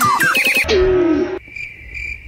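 Cartoon sound effects: a quick run of short downward-swooping chirps stepping up in pitch, then a falling tone, then a quieter second of steady cricket-like chirping.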